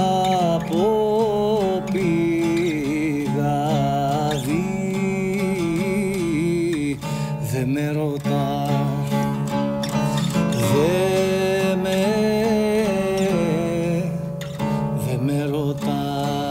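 Cretan laouto plucked in a steady, rhythmic accompaniment, under a man's voice singing a traditional Cretan melody that bends and wavers around each note.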